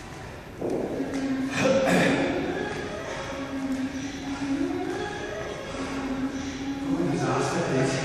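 Indistinct voice echoing in a large hall, some notes held for a second or more, with two knocks at about half a second and just under two seconds in.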